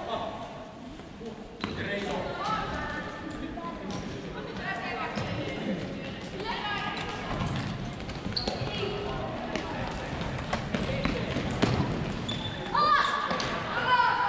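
Floorball match sound in a large, echoing sports hall: scattered shouts from players and the bench, with the clacks of plastic sticks and ball and short high shoe squeaks on the court floor. A louder shout comes about a second before the end.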